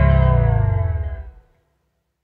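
Final chord of a pop-rock song ringing out on guitar, with no drums, fading steadily and dying away about a second and a half in.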